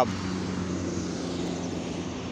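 A steady, low engine drone with a constant hum under it.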